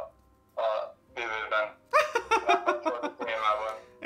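Speech only: a man talking, after a short pause at the start.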